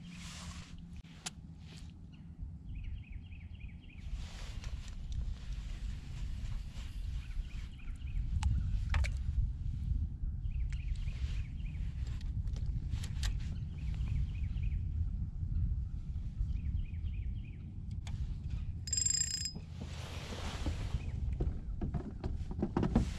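Wind rumbling on the microphone, louder from about a third of the way in, with faint spinning-reel winding and a few light clicks. A brief high two-tone beep comes near the end.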